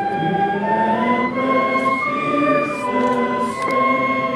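A large group of men singing a hymn together outdoors, slow held notes moving step by step.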